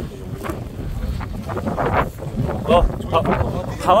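Wind rumbling on the microphone, with people's voices talking in the background, a word spoken near the end.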